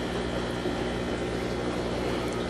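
Steady low electrical hum with an even buzz, unchanging throughout.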